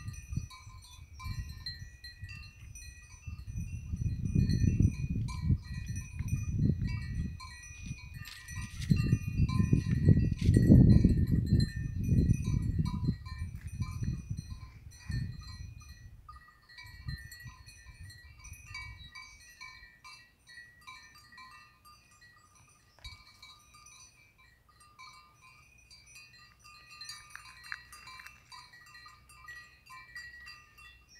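Wind buffeting the phone's microphone in gusts, strongest around the middle and dying away in the second half. Faint, steady high ringing tones come and go throughout.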